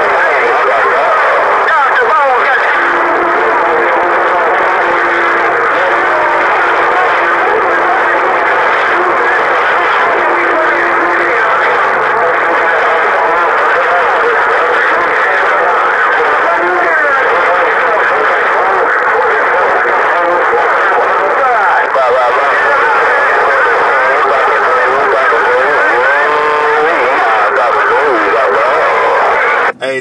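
President HR2510 radio's speaker receiving the crowded CB channel 6 (27.025 MHz): a continuous, garbled babble of many distant stations talking over one another, thin and narrow-sounding. A couple of steady tones run underneath it for several seconds in the first half.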